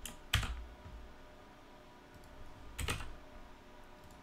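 Computer keyboard keystrokes: a few separate key presses rather than steady typing, the loudest about a third of a second in and another near three seconds.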